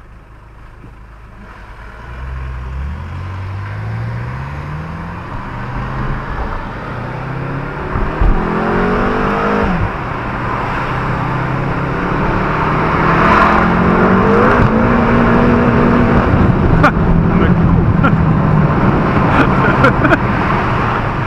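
A BMW M car's engine, heard from inside the cabin, pulling away hard from a standstill: its pitch climbs, drops back at each gear change and climbs again several times, getting steadily louder.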